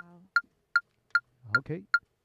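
Click-track metronome ticking at an even tempo, about two and a half short pitched clicks a second, with no band playing over it. A low bass note dies away at the start, and a voice says "okay" near the end.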